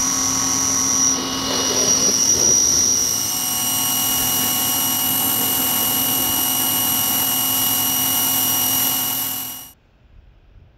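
Pressure washer running with a steady high whine while its jet sprays against house siding, the spray hiss swelling a second or two in. The sound cuts off just before the end.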